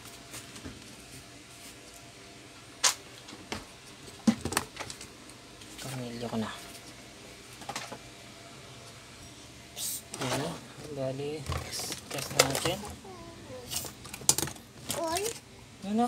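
Sharp clicks and knocks of parts handled on a workbench. From about six seconds in, a young child's voice vocalises several times.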